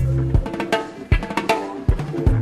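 Live reggae band playing an instrumental passage with no vocals: sharp drum kit hits over a deep bass line and chords.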